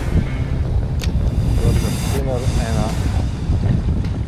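Wind buffeting the microphone over the steady rush of a shallow river, with a few untranscribed words of a man's voice around the middle and a sharp click about a second in.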